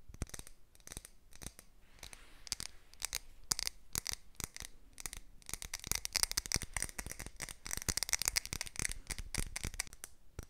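Fingernails tapping and scratching on a large glass Yankee Candle jar held close to the microphone, quick irregular taps, thickening into dense, fast scratching from about six seconds in until near the end.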